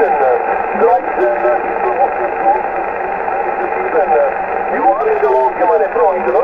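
A weak voice transmission from a distant station heard through an Icom transceiver's loudspeaker. Faint, barely readable speech sits under a steady hiss of band noise, squeezed into a narrow, tinny voice band. The signal is poor in this direction: a five-by-one report.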